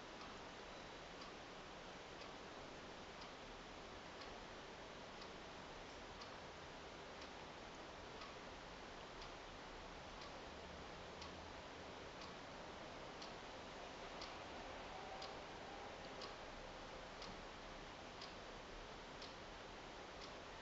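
A clock ticking faintly and evenly, about one tick a second, over quiet room hiss.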